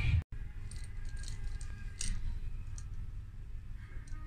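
Shop background: a steady low hum with a few faint scattered clicks and light rattles, as of merchandise being handled.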